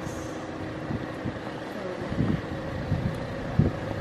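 City street ambience: a steady hum of traffic, with a few short low thumps.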